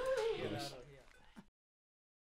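A person's voice in a short, falling, wavering vocal phrase that fades away, then the sound cuts off to dead silence about one and a half seconds in.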